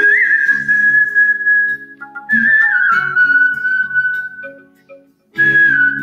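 A person whistling a melody over a musical accompaniment: a long held note with a small flourish at its start, then a second phrase with quick trills that drifts downward, a brief pause, and a new held note near the end.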